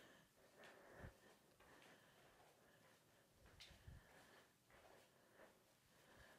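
Near silence, with a couple of faint soft thuds from bare feet stepping sideways on an exercise mat.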